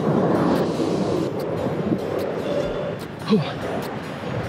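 Ocean surf washing up on a sandy beach, a steady rush of breaking waves. A short breathy exhale comes about three seconds in.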